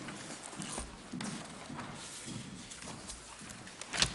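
Papers being leafed through and handled on a table close to a microphone: rustling with scattered small clicks and a few soft knocks, one about a second in and one at the end.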